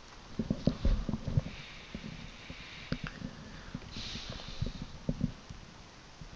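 Faint, scattered low thumps and short clicks, with a soft breath-like hiss about four seconds in.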